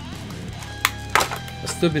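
Two sharp clicks about a second in, roughly a third of a second apart, from a clear plastic blister pack being pried open by hand, over steady background guitar music.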